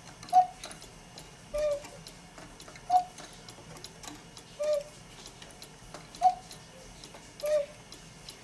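Cuckoo clock's bellows pipes, worked slowly by hand, sounding three two-note cuckoo calls: a higher note, then a lower one more than a second later. The clock's movement ticks steadily underneath.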